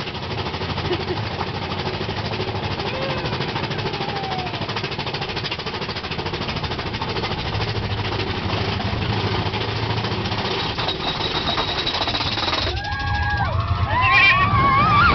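Big Thunder Mountain Railroad mine-train roller coaster clattering along its track in a rapid, steady clack. The clatter stops about a second before the end and a rider calls out.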